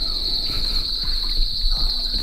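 Crickets trilling in the grass: a steady, unbroken high-pitched drone.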